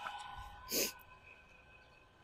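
Faint, steady whine of a tracked robot's 12 V DC drive motors, fading as the robot drives away on gravel. A short breathy puff comes about a second in.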